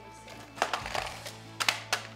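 Clear plastic toy capsule being pried open by hand: a handful of sharp plastic clicks and cracks, the last two close together near the end, over background music.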